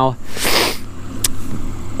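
Gleaner F combine's engine idling as a low steady hum, with a short rushing hiss about half a second in and a faint click a little after one second.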